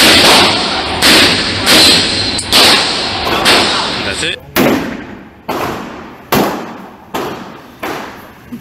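Smith & Wesson 629 .44 Magnum revolver firing a string of shots, about one a second, each loud crack followed by a long echo off the indoor range's walls. In the first half the shots and their echoes run together; from about halfway on they stand apart, each fading before the next.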